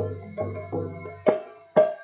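Hand-drum strokes at about two to three a second, each ringing briefly, over a low sustained tone: kirtan accompaniment with no singing.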